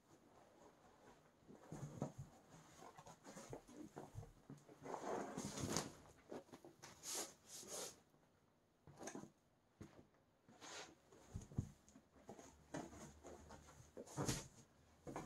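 Faint rustling and swishing of a large carpet being unrolled and flipped over on a concrete floor, with soft thuds and shoe scuffs; the loudest swish comes about five seconds in.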